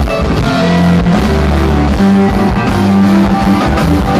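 Live band playing an instrumental jam passage, with fiddle, mandolin and guitar over drums and bass.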